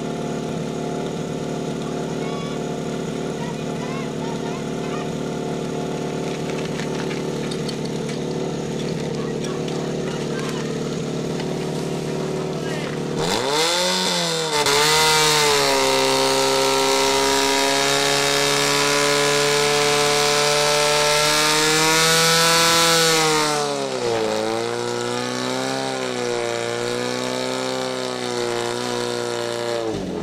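Portable fire pump engine idling steadily, then revved up hard about halfway through and held at high revs for roughly ten seconds with a loud hiss alongside, while it drives water through the attack hoses. The revs then drop and waver, and rise again briefly near the end.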